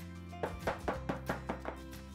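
Metal baking pans knocked repeatedly against a wooden cutting board to level the cake batter, about seven quick knocks in a second and a half, over background music.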